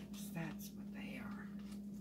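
A woman whispering a few words under her breath while her hands rustle the plastic bag wrapped around the roots of a bundle of bare-root trees, over a steady low hum.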